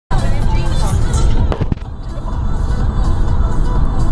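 Road and wind noise inside a moving car's cabin: a loud, steady low rumble, with a couple of sharp knocks about a second and a half in.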